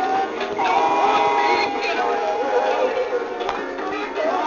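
Big Mouth Billy Bass animatronic singing fish toy playing its recorded song through its small built-in speaker, sounding thin with no bass. There is a single click about three and a half seconds in.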